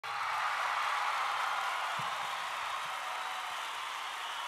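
A steady, even hiss of noise that slowly fades.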